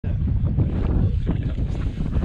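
Wind buffeting the camera microphone, a heavy, uneven low rumble.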